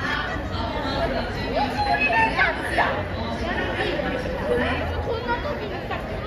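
Background chatter of several people talking at once, their voices overlapping.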